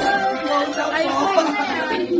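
People chattering, several voices talking over one another.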